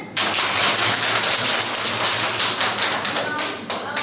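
A class of schoolchildren applauding: a dense burst of clapping that starts suddenly and dies away after about three and a half seconds.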